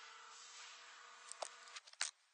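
Faint steady static hiss with a low electrical hum, breaking up into sharp crackles and clicks over the last half second as the hum cuts out.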